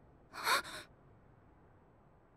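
A short, breathy gasp from a voiced anime character, about half a second long, with a brief voiced catch in it.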